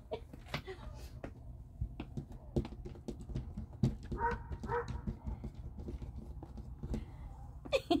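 A cat jumping up against a leaded-glass window pane: scattered taps and knocks on the glass, with two brief calls about four seconds in.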